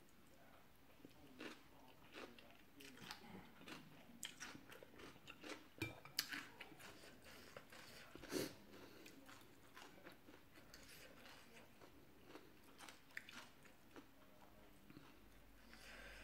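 Quiet close-up eating sounds: a person chewing and slurping rice noodles in curry sauce, with many soft mouth clicks and smacks. Two sharper, louder sounds stand out about six and eight seconds in, fitting a fork and spoon knocking the glass bowl.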